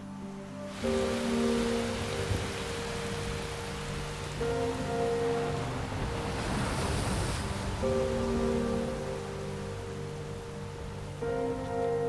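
Soft background music of long held notes over the steady hiss of heavy typhoon rain and wind. The rain noise swells about halfway through.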